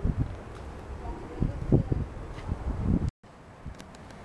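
Wind buffeting the microphone in irregular low rumbling gusts, cut off suddenly about three seconds in and followed by a quieter steady hush.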